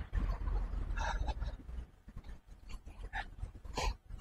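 Low rumble from wind and handling on a handheld camera's microphone as the camera is turned, with a few short scratchy noises.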